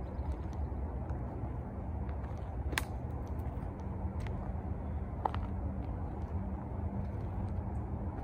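Steady low outdoor rumble, with two brief sharp clicks, about three and five seconds in.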